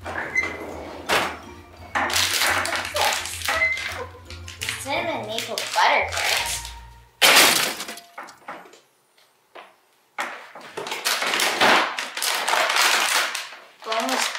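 Hands rummaging through frozen-food packages in a bottom freezer drawer, the plastic bags crinkling and rustling. There is one loud, sudden clatter about seven seconds in.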